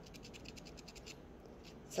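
Faint, quick scratchy strokes of a silver DecoColor paint marker's felt nib dabbed along the rough, rock-textured edge of a resin coaster, with a short pause about halfway through. The nib is worn and fluffy.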